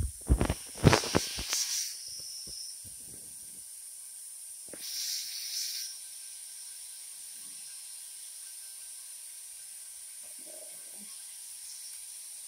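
Small clicks and knocks of steel pliers and gloved fingers working a septum captive bead ring, trying to pop its ball out, clustered in the first two seconds. A short airy hiss follows about five seconds in, over a steady background hiss.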